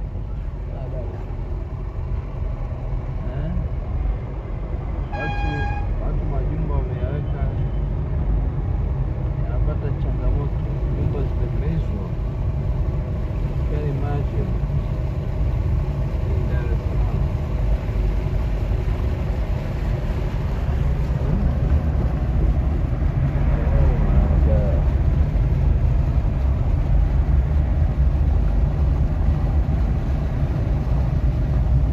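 Street ambience with a steady low rumble of traffic, a short vehicle horn toot about five seconds in, and faint voices in the background.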